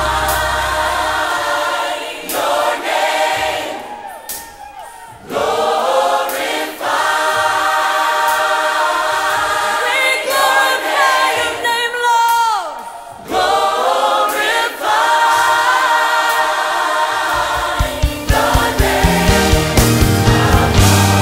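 Gospel choir singing a worship song in sustained chords with band backing. The bass drops away about a second in, and a pulsing low beat comes back in near the end.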